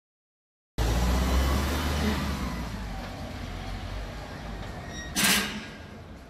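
Police van engine running as the van drives off, its low rumble fading away. A brief loud burst of noise about five seconds in.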